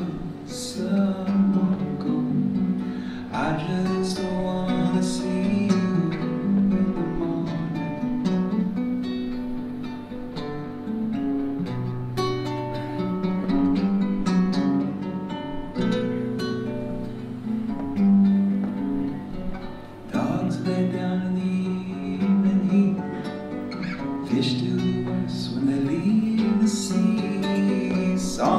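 Solo acoustic guitar played live: an instrumental passage of picked chords over a moving bass line, with crisp string attacks throughout.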